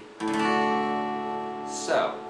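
Acoustic guitar strummed once on a D major chord, the chord ringing out and slowly fading.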